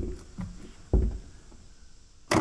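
Hands working a car door's wiring connector loose in the door hinge gap: a light knock, then one sharp, dull thump about a second in, then quiet.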